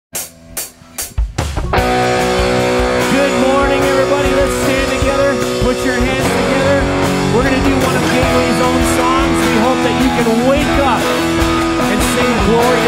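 Live worship band starting a song: four sharp clicks, then just under two seconds in acoustic guitar and drums come in together and keep playing. A man's voice sings over the band.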